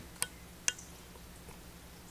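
Two short, sharp clicks about half a second apart, over a faint steady low hum.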